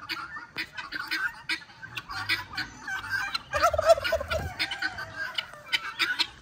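Domestic turkeys and guinea fowl calling in a poultry pen: a turkey gobbles in a warbling call from about three and a half to four and a half seconds in, over a run of short, sharp bird calls.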